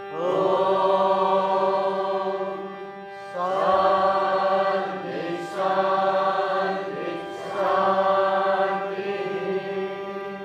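A group of men chanting a mantra in unison over a steady drone: three long, drawn-out phrases, each rising at the start and held for about three seconds, with short breaths between them.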